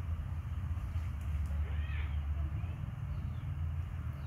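Steady low rumble of an electric fan's air buffeting the microphone, with one short high-pitched chirp, rising then falling, about halfway through.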